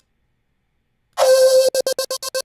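Silence for about a second, then a gated flute one-shot sample playing: a pitched tone that starts abruptly and soon breaks into a rapid on-off stutter, about ten pulses a second.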